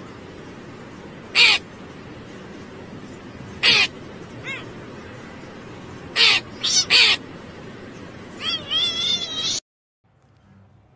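A crow cawing in single short calls a couple of seconds apart, three close together around the middle, then a longer wavering run of calls near the end. A steady hiss lies under the calls, and the sound cuts off suddenly just before the end.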